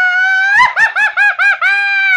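A man's high falsetto yell: a held note, a quick run of about five short yelps, then a long held note beginning near the end.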